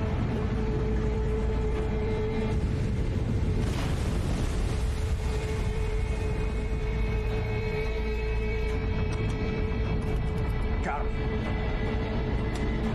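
Tense film score: one steady note held over a deep low rumble, with a brief swell about four seconds in.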